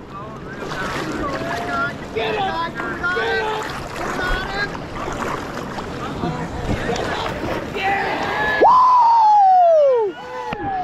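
Steady rush of river water with several people's voices calling in the background. Near the end comes a loud, long whoop that falls steadily in pitch, a shout of excitement as a king salmon is landed.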